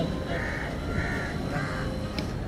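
A crow cawing three times, each caw short and evenly spaced about two-thirds of a second apart, faint under the background hum of the PA.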